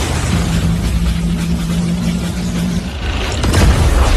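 Anime sound effects of a giant energy cannon charging up: a steady low hum over dense crackling noise, with the hum dropping out and the noise swelling near the end.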